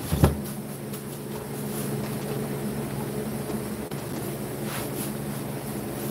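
A small plastic projector is set down on a table with a knock just after the start, followed by a steady low machine hum made of several fixed tones.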